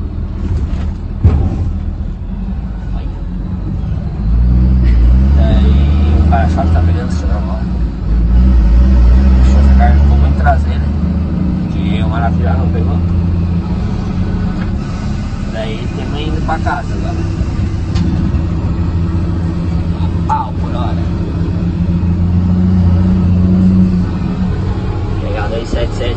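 Truck engine running in the cab, a steady low drone that gets louder about four seconds in and again about eight seconds in as it pulls, then eases and swells again.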